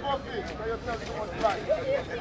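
People's voices talking close to the microphone, a casual conversation with no other clear sound above it.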